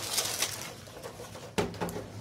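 Handling noise as a small four-volt fan is picked up and shifted on a wooden workbench: rustling and knocking, with a short low-pitched sound about one and a half seconds in.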